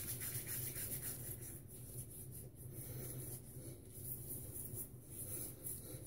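Hands rubbing wet pre-shave cream and soap bloom water into beard stubble: a faint, uneven rubbing over a low steady hum.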